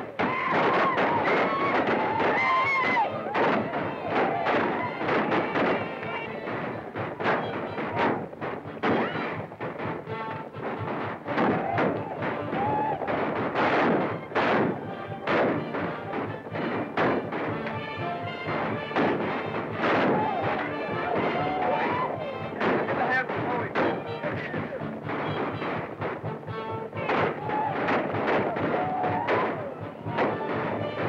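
Battle soundtrack of flintlock rifle shots going off irregularly, many in quick succession, over music and shouting.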